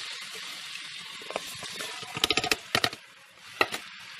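Cubes of pork fat sizzling in hot oil in a pot, a steady hiss. A quick run of sharp clicks and knocks comes about two seconds in, and one more near the end.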